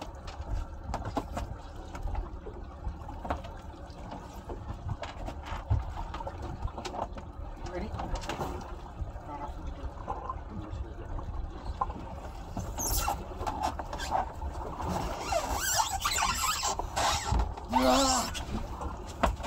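Low rumble of wind and sea on a small boat's open deck, with scattered knocks of hands and gear and indistinct voices; the handling noise grows louder and busier in the last few seconds.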